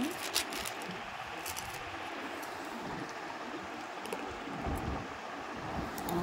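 A few light clicks of a steel spoon against an aluminium pressure cooker as salt is tipped into soaked lentils in water, over a steady background hiss. A brief low rumble comes about five seconds in.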